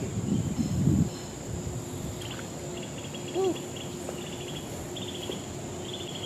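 Insects chirping in short, repeated high-pitched trills over a steady high buzz. A louder burst of low rustling noise comes in the first second.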